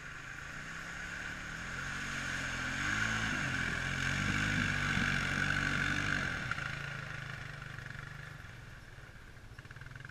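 Honda Rancher ATV's single-cylinder engine approaching and passing while it churns through a muddy puddle. It grows louder, its pitch rises and falls with the throttle in the loudest middle stretch, and it fades away after about six and a half seconds.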